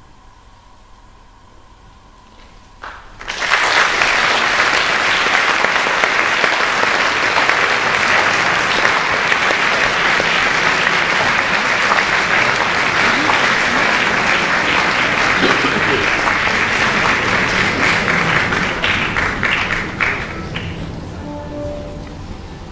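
Audience applause at the end of a string orchestra's piece, breaking out suddenly about three seconds in after a short hush, holding steady, then dying away near the end.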